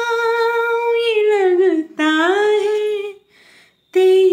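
A woman singing unaccompanied, holding long wordless notes. The first note bends down near the end, then after a short break a second note is held, followed by an audible breath.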